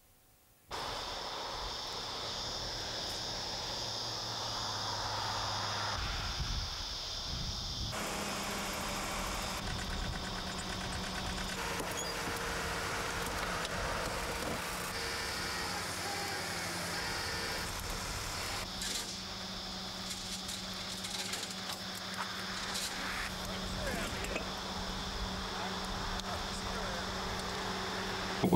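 Steady outdoor location sound under news footage: an even hiss and low hum with faint, indistinct voices. It starts under a second in and changes abruptly at edit cuts about 8 and 19 seconds in.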